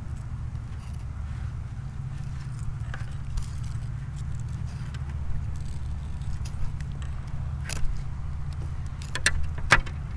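Steady low hum of an idling engine, with a few sharp clicks near the end.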